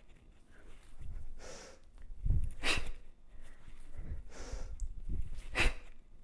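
A woman's breathing paced to kettlebell hang clean reps: a drawn-in breath, then a sharp forceful exhale, twice over, with dull low thuds from the movement underneath.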